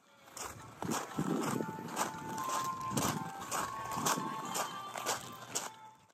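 Walking footsteps on a gravel path, about two steps a second, each a short crunch under running shoes. Faint held tones sound underneath.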